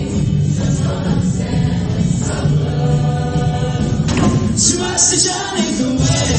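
Show choir singing in full chorus over live musical accompaniment, with a bright crash about four and a half seconds in.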